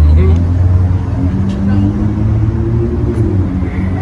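A motor vehicle engine running close by: a steady low hum whose pitch creeps slightly upward, loudest at the start.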